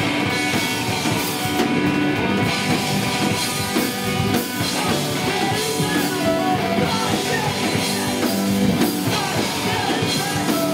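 Live rock band playing loud and steady: electric guitars, electric bass and drum kit, with a singer at the microphone.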